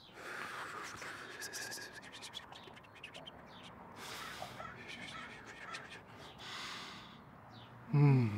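A person breathing heavily into a phone call: a few long breaths about two seconds apart, with faint clicks between them.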